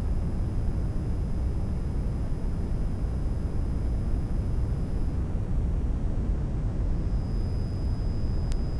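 Steady low rumble of room noise, with no voices or distinct events.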